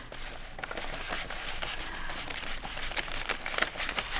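Paper US dollar bills rustling and crinkling as a stack of notes is leafed through and sorted by hand, with many small flicks of paper.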